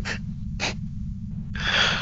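A man's breathy gasps: two short puffs of breath, then a longer, louder gasp near the end, acted out as the burn of a swig of strong homemade liquor.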